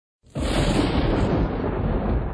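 Recorded thunder sound effect: a sudden crack about a quarter second in, going straight into a sustained, heavy rumble.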